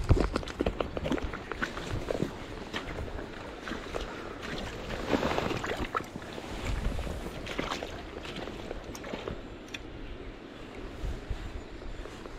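Footsteps wading through shallow river water over stones: wading boots splashing and crunching on the cobbled bed in a series of irregular steps, with a louder stretch about five seconds in.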